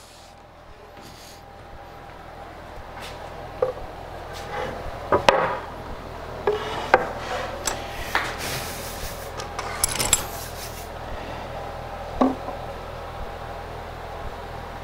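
A wooden dovetailed drawer being handled and set down on a metal table saw top, with scattered knocks, the strongest about five seconds in and again near the end. A hand brushes across the saw top for a couple of seconds in between. The drawer is being checked for rocking on a known flat surface.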